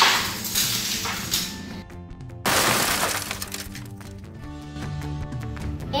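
A die-cast toy car shot from a launcher into plastic toy soldiers on a tile floor, heard as two crashing, shattering bursts. The first comes at once; the second starts suddenly about two and a half seconds in, with a rattling clatter after it. Background music plays underneath.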